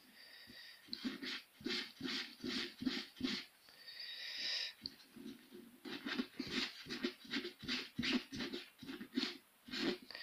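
Quick back-and-forth rubbing of a kerosene-soaked wipe over the stained finger of a disposable glove, about three strokes a second, with one longer drawn-out wipe about four seconds in. The dark residue, thought to be carbon, is not coming off.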